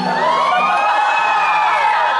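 Audience cheering and screaming together, a long high shriek of many voices that rises and then falls away.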